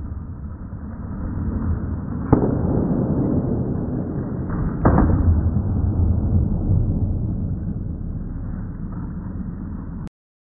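Trailer sound effects: a steady low rumble with two sharp booming hits, one a little over two seconds in and another about two and a half seconds later. The rumble swells after the second hit and then slowly eases.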